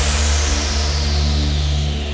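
Electronic bass house music: a heavy sustained bass under a noise sweep that falls steadily in pitch, with no drum hits.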